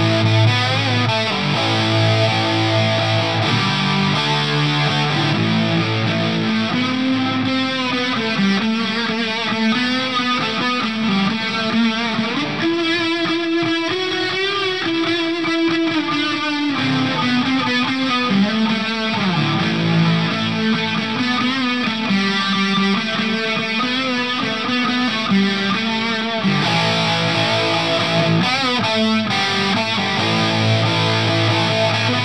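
Stratocaster-style electric guitar played through a Marshall amp with three pedalboard effects switched in together by the looper, the bypass turned off. It opens with held chords, moves into single-note lead lines with one long held note in the middle, and returns to chords near the end.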